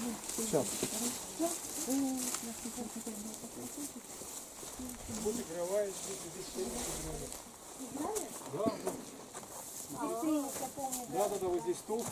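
Indistinct voices of several people talking quietly among themselves outdoors, with no clear words.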